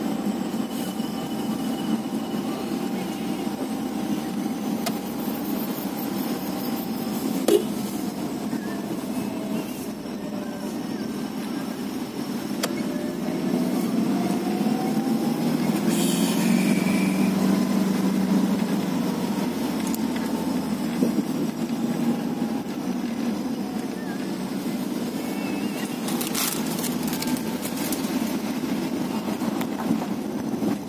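Car engine running and tyres rolling, heard from inside the cabin while driving slowly on a rough road. The engine note rises and falls gently, with a few short knocks along the way.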